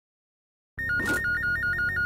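Desk telephone ringing with an electronic ring, a fast warble flipping between two high tones about six times a second, starting about three quarters of a second in.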